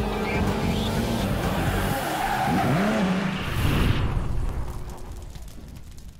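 Intro sound design of car sound effects, a running engine with tyre squeal and pitch sweeps, mixed with music. It builds to its loudest hit about four seconds in, then fades away.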